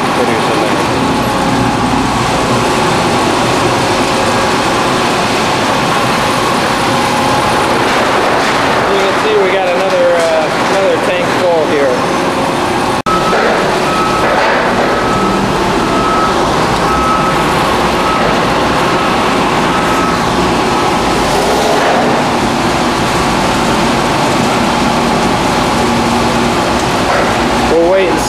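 Screw press and surrounding processing-plant machinery running steadily and loudly as the press discharges egg-shell press cake. After a brief break about halfway through, a steady high tone comes and goes for several seconds.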